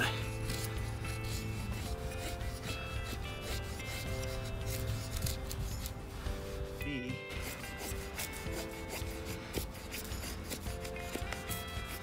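A steel knife blade shaving thin curls off a wooden stick to make a feather stick, in repeated scraping strokes, with soft background music underneath.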